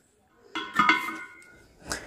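A safety pin scraping against the metal seat of an LPG cylinder valve as the rubber sealing washer is pried out. It gives a short ringing squeak about half a second in, then a sharp click near the end.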